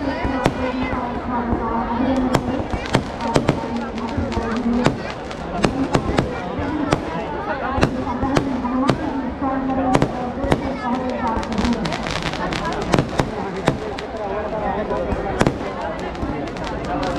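Aerial fireworks bursting overhead: a rapid, irregular run of sharp bangs and crackles. Behind them are a crowd's voices and music.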